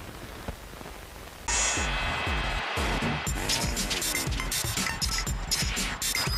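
A faint hiss for about a second and a half, then a sudden switch to a loud electronic TV-ident jingle, with sliding tones followed by a steady beat.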